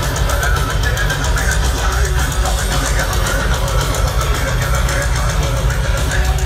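Live heavy metal band playing loud over a concert PA: guitars and drums with a heavy, booming low end.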